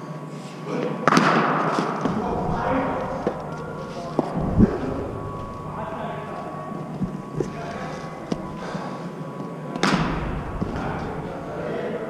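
Hard cricket-ball impacts in an indoor net hall: a sharp crack about a second in and another near the end, each ringing on in the hall, with a duller low thud midway.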